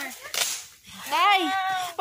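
A brief rustling burst, then about a second in a person's drawn-out voiced exclamation, held for close to a second, rising then falling in pitch.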